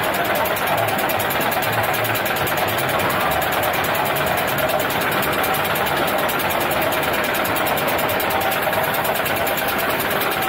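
Suspended roller coaster car climbing the lift hill, with the lift mechanism rattling steadily.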